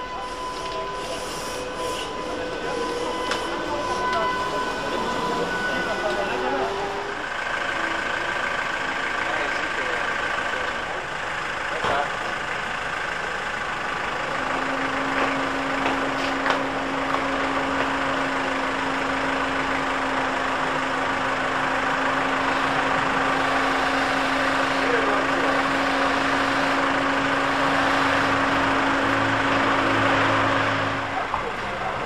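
Bus-stop street noise. For the first several seconds an articulated trolleybus's electric drive whines, with a tone that rises in pitch as it moves off. Later a midibus stands with its door open, and a steady low hum runs through the second half.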